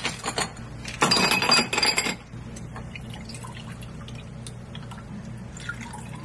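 Ice cubes dropping into a glass with a clatter of glassy clinks, loud for about a second near the start; then a quieter stretch of faint ticks and trickling as red wine is poured over the ice.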